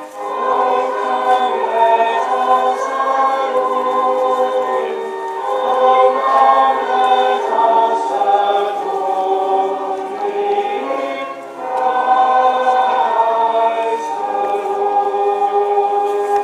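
A choir singing a slow piece in long, held notes, with a short break between phrases about two-thirds of the way through.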